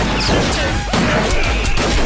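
Action-film fight soundtrack: background score with repeated punch and crash sound effects.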